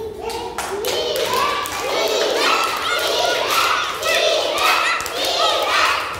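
A group of young children shouting a repeated chant, about one call a second, over clapping.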